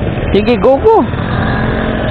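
Motorcycle engine running steadily under way, with wind and road noise over it, and a short spoken word about half a second in.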